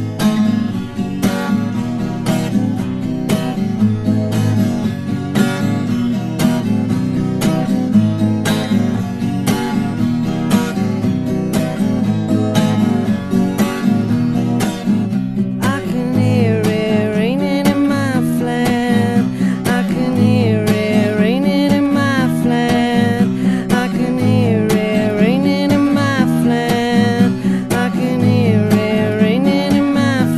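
Song intro on acoustic guitar, strummed in a steady rhythm. About halfway through, a higher melody line that bends up and down in pitch joins the guitar.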